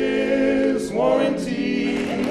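Barbershop quartet singing a cappella: men's voices holding close-harmony chords, with a chord change about a second in.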